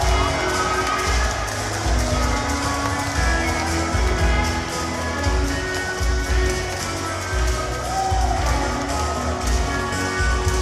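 A live band playing with a steady beat from a drum kit: kick drum and regularly struck cymbals under sustained pitched instrument parts.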